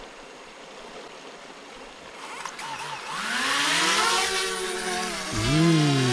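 Small folding quadcopter drone's propellers spinning up about two seconds in, the whine rising steeply in pitch as it lifts off, then running loud while hovering, the pitch shifting up and down. A stream runs quietly beneath.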